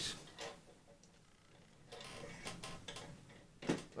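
Faint clicks and light knocks from a wooden phonograph case being closed and its small metal hooks fastened, with a sharper click near the end.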